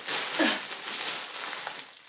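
Rustling and crinkling of bedding and a plastic mailer bag as a person climbs onto a bed, with a brief vocal sound about half a second in.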